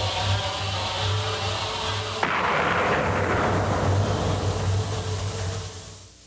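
Sustained chord held over a pulsing low rumble, then, a little over two seconds in, a sudden loud blast whose noisy roar slowly dies away.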